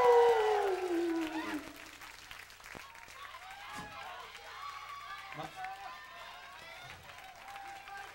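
A man's drawn-out announcing voice over a PA, falling in pitch and fading out in the first second or two, followed by audience applause and scattered cheering.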